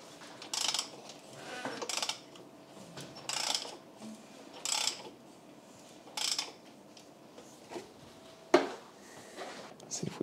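Handling noise of a borescope probe cable being worked in an engine's spark plug hole: about six short, irregular scraping rustles, with one sharper click late on.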